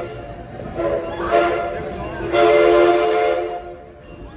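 Steam locomotive chime whistle sounding a chord of several notes at once in a series of blasts. The last blast is the longest and loudest and stops shortly before the end.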